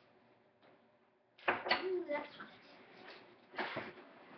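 A girl's voice briefly speaking or exclaiming about a second and a half in, after a quiet stretch, followed by a short bump near the end.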